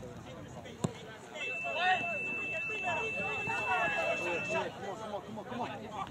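Indistinct voices of players and onlookers calling out on a soccer field, with a single sharp knock about a second in. A faint steady high tone runs for about three seconds through the middle.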